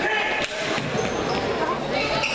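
Basketball game sounds in a gym: a single ball bounce about half a second in, short high sneaker squeaks on the hardwood court, and voices from players and spectators echoing in the hall.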